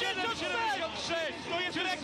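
Speech: a male sports commentator's voice calling the finish of the race.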